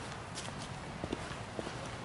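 Footsteps on a path strewn with fallen dry leaves, the leaves crackling underfoot in short, irregular clicks.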